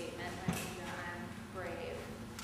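Quiet speech in a large hall, with a single sharp knock about half a second in.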